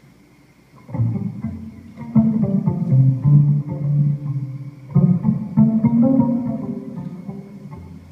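Live acoustic strings, with a cello to the fore, playing an instrumental passage between sung verses. Low plucked and held notes come in about a second in, and a fresh phrase starts about halfway through.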